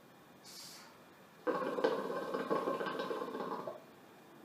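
Hookah water bubbling in the base as smoke is drawn hard through the hose, a dense rapid gurgle lasting a little over two seconds and stopping shortly before the end. A short hiss comes first, about half a second in.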